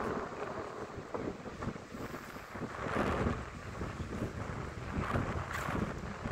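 Wind buffeting the microphone in gusts, an uneven rumbling hiss that swells about halfway through and again near the end.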